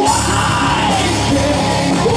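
Live rock band playing, with a singer's sustained vocal line over electric guitar, keyboard and drums; the voice glides and holds through the first second.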